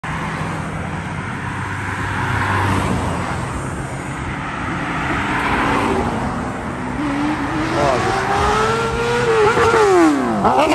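Cars passing on a multi-lane road with steady tyre and engine noise. From about seven seconds in, a motorcycle engine rises steadily in pitch as it accelerates hard toward the listener, and more bikes join in. Near the end the pitch drops sharply.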